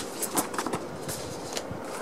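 Sheets of pattern paper and card being handled: a few short rustles and light taps.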